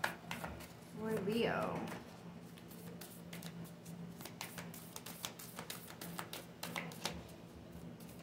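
A deck of oracle cards being shuffled by hand: a faint, irregular run of light card clicks and snaps over a low steady hum.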